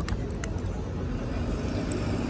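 Street traffic: a motor vehicle's engine running with a steady low hum, with a few faint clicks over it.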